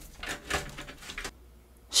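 Soft scraping and rustling of PC power-supply cables (the 8-pin CPU auxiliary power leads) being pushed through a cable-routing hole in the case, a few faint scrapes in the first second or so.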